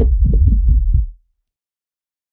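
Candle flame recording processed into a dense, heavy bass sound effect through EQ, bass-enhancing, saturation and multiband-compression plugins: a deep rumble with rapid crackling pulses, about five a second. It cuts off abruptly a little over a second in.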